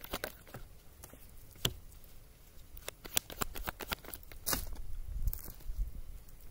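A deck of tarot cards being shuffled by hand: irregular soft flicks, snaps and taps of the cards, with one card dealt onto the cloth-covered table.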